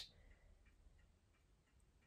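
Near silence, with faint ticking from a clock in the room.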